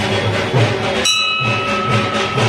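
Background devotional music with a steady beat; about a second in, a temple bell is struck once and rings on with a clear, sustained tone.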